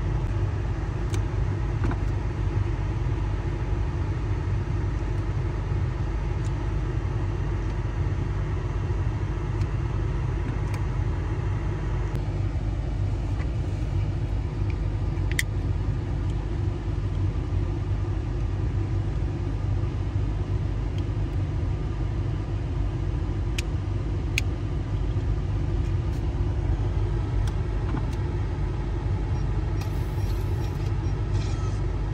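Steady low rumble of a car engine idling, heard from inside the cabin, with a few brief sharp clicks over it.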